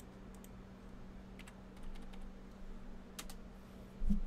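A few sparse clicks from a computer keyboard and mouse, some in quick pairs, over a steady low electrical hum.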